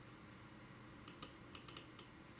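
Faint computer keyboard keystrokes: about six quick taps in the second half.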